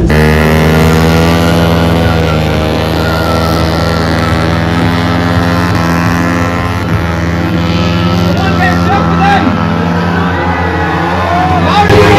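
Motorcycle engine held at high, steady revs, with crowd voices in the background.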